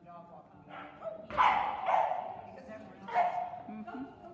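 A dog barking in two loud bursts, the first about a second and a half in and the second near three seconds.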